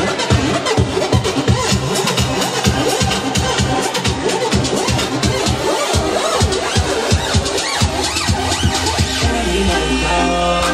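Electronic dance music with a steady kick-drum beat, mixed live on CD decks and a mixer and played loud through the sound system. Near the end the beat drops out and a held low bass note takes over.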